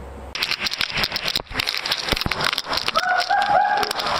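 Water sloshing and splashing inside a rolling hydro-zorb ball, with rapid crackling knocks from the plastic shell, starting abruptly. Near the end a rider inside gives three short, high, held yells.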